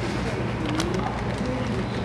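Supermarket checkout ambience: a steady low hum with a faint murmur of distant voices and a few light clicks.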